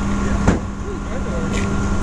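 Steady hum of an idling vehicle engine, with one sharp knock about half a second in and faint voices in the background.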